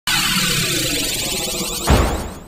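Electronic intro sting: a dense whooshing noise with a steadily rising sweep that builds for nearly two seconds, then breaks into a sudden deep hit near the end.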